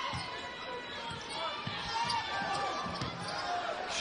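A basketball dribbled on a hardwood arena court, a run of short irregular bounces, over the background noise and voices of the arena crowd.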